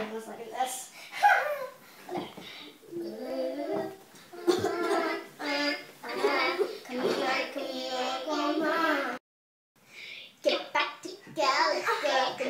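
Young girls' voices, talking and sing-song vocalising, with the sound cutting out completely for about half a second a little after nine seconds in.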